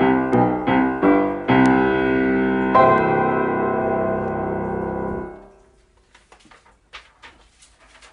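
Grand piano playing the last chords of a hymn, ending on a final chord held for about two and a half seconds before it is cut off. Faint small clicks and rustles follow.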